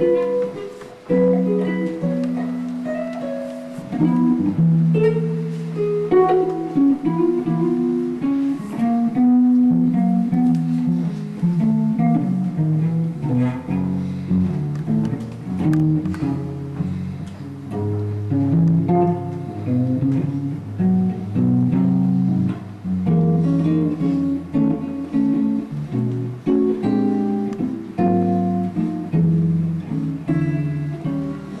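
Solo archtop guitar playing chords, several notes at a time, over a moving bass line in a steady flow of changing harmonies.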